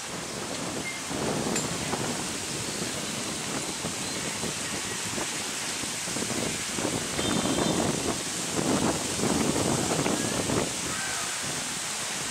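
Wind and sea surf: a steady rushing noise that swells louder in gusts about a second in and again several times in the second half.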